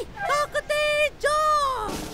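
A high-pitched puppet character's voice in several short syllables and one longer drawn-out one that trails off near the end: speech only.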